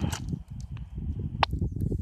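A received transmission on a Puxing PX-728 handheld radio's speaker cuts off right at the start as the squelch closes, leaving a low rumbling noise on the microphone with a few faint clicks and one sharper click about a second and a half in.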